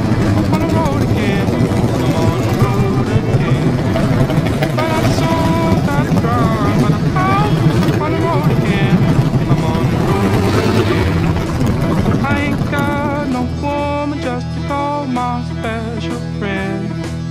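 Music with a wavering sung or played melody over a heavy rumble of motorcycle engines riding past. The engine rumble fades about thirteen seconds in, leaving plucked guitar music.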